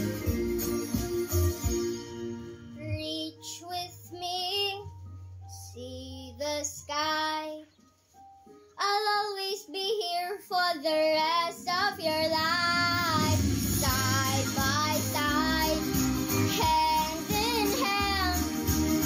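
A young girl singing a solo over instrumental accompaniment. The voice comes in about two seconds in over light backing, everything drops away briefly around the middle, then she sings on over fuller backing.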